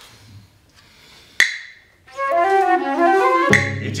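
Live chamber ensemble: a single sharp knock about a second and a half in, then a flute melody moving in short stepwise notes from about two seconds. Low strings come in underneath near the end.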